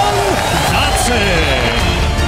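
Music playing under a man's wordless yell as a boxer celebrates his knockout win.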